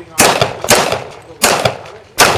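Pistol fired three times, the shots about half a second to three quarters of a second apart, each a sharp crack with a short echoing tail.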